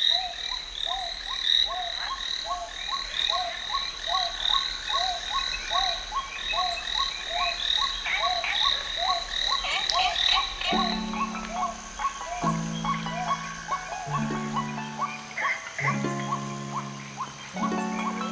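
Repeated croaking animal calls, about two a second, with higher chirping behind them. About eleven seconds in, long held musical notes begin, a new one every second and a half or so, as the calls fade.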